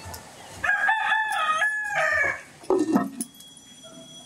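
A rooster crows once: a long, pitched call of about a second and a half. A short, lower call follows soon after.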